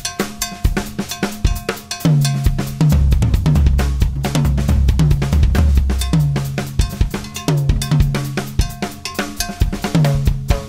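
Drum kit played as an improvised Latin groove against a rumba clave pattern, with sharp, high-pitched cowbell-like clave strikes. About two seconds in, tom strikes and bass drum come in and the playing gets louder and busier.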